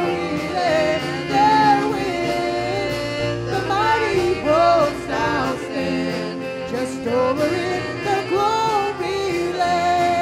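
Live gospel worship song: a woman sings the lead melody in long held notes over a band of keyboards and drums.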